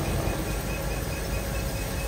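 Steady rumble of a river boat's diesel engine running under throttle, with water churning from its propeller. The boat is aground on a shallow and working to free itself.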